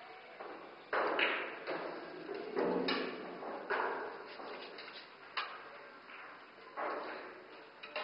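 Pool balls and cues knocking around a pool table: a string of separate sharp knocks and clacks, about one a second, echoing in a large room.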